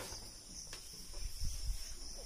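Light taps and scrapes of a marker writing on a whiteboard, with a couple of sharp clicks and some dull knocks. A steady high-pitched hum runs underneath.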